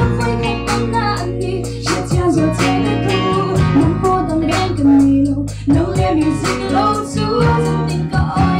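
Live band music: a woman and a man singing over electric guitar, electric bass, keyboard and drums, with a steady beat.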